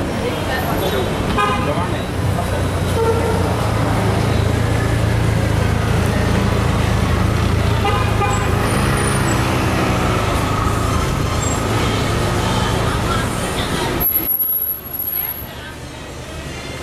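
Busy city street traffic: car engines running close by with a steady low hum, a few short car-horn toots, and passers-by talking. The sound drops abruptly about two seconds before the end.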